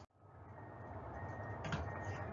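Faint room tone of a lecture recording: a low hum and hiss with a thin, steady high tone. It drops out to silence for a moment at the start.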